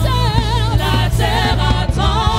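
Live gospel worship singing: several voices singing in French with vibrato over a steady keyboard and bass accompaniment, heard through a church PA system.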